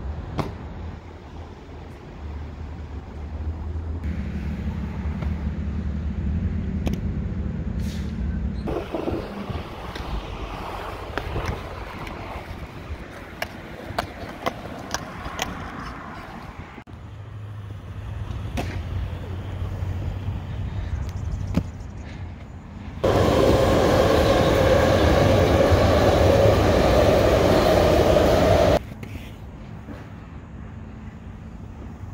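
Inline skate wheels rolling over concrete, with scattered sharp knocks and clicks as the skates land and strike the surface. A much louder stretch of close rolling noise comes near the end.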